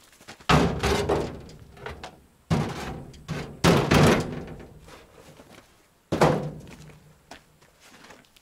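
Heavy objects dropped into a sheet-metal car trailer bed: four loud thuds, each dying away over about a second.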